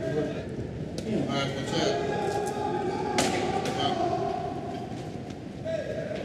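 A scuffle of officers handling a person on a cell floor: a knock about a second in and a sharper thud about three seconds in, under indistinct men's voices.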